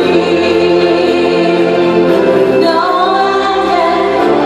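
Live concert music amplified through an arena sound system: several voices hold long, choir-like notes, and one line climbs in pitch a little under three seconds in.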